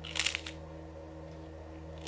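A crisp crunch of someone biting into a rice cake spread with mashed avocado, one short crackling bite shortly after the start, over a steady low hum.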